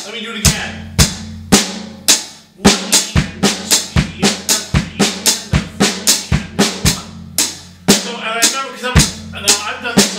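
Drum kit played: an even rock beat, then from about two and a half seconds in a fast run of sixteenth notes at about four strokes a second, grouped in threes of snare, hi-hat and bass drum, easing back into the beat near the end.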